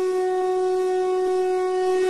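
One steady sustained musical note, held without change, from the channel's logo jingle.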